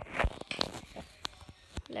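Handling noise from the phone that is recording: fingers rubbing and bumping against it, a few sharp knocks among scratchy rustling.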